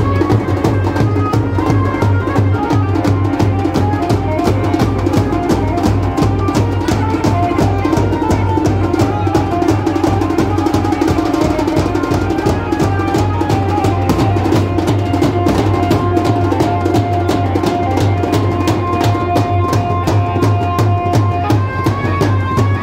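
Loud devotional folk music with fast, unbroken hand drumming on a dhol and a melody line held over the beat.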